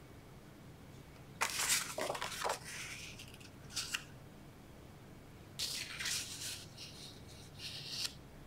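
Cardstock sheets being picked up and laid down on a cutting mat: several short bursts of paper rustling and sliding, with quiet gaps between them.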